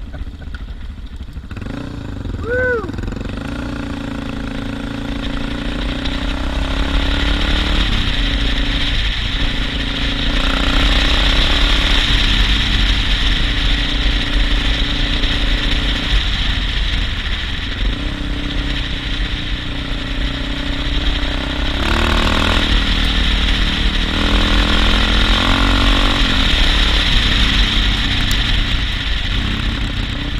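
Suzuki DR650's single-cylinder engine running under way on a dirt road, its note changing several times with the throttle. Wind noise on the microphone grows louder as the speed picks up about ten seconds in.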